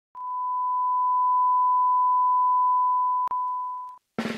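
Steady 1 kHz line-up test tone, the reference tone that accompanies colour bars at the head of a video tape. It starts just after the beginning, has a brief click about three seconds in, and fades out at the end.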